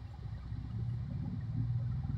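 A low, steady motor-like hum that swells slightly after about a second.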